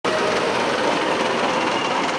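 A city bus engine idling steadily at a stop, a continuous mechanical running noise.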